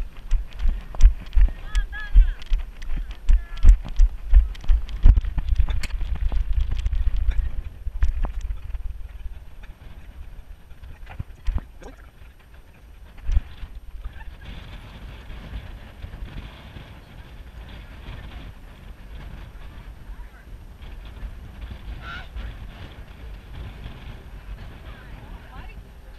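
Running footfalls jolting a hand-held or body-worn camera, about two thuds a second, with wind on the microphone. A few short high-pitched calls sound about two seconds in. The thuds stop after about eight seconds, leaving a quieter outdoor background with faint voices.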